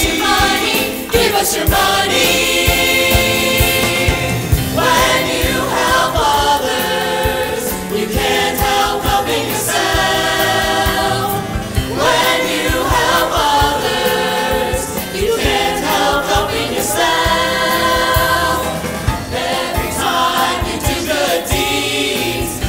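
A musical-theatre ensemble of voices singing in chorus over a backing band, with long held chords every few seconds.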